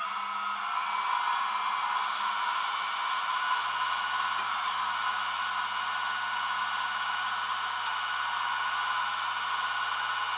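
Rollback tow truck's winch running steadily under load, a constant whine with a low hum beneath, as it draws a pickup truck up onto the bed.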